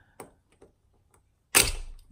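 A plastic pry tool ticks faintly against a key fob's plastic shell, then about one and a half seconds in comes a sudden loud snap as the snap-fit shell pops apart.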